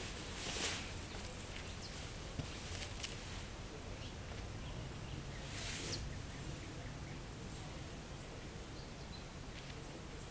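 Quiet outdoor background with faint bird chirps. A short rustle of clothing comes as a person passes close by just under a second in, and another brief whooshing noise follows about six seconds in.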